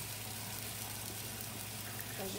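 Hot dogs sizzling faintly and steadily on a hot flat griddle, over a constant low hum.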